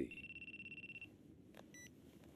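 A faint, high, fast-trilling electronic tone lasting about a second, followed by a short beep near the end.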